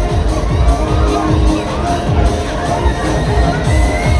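Riders screaming on a giant swinging pendulum fairground ride, over loud dance music with a steady thudding beat.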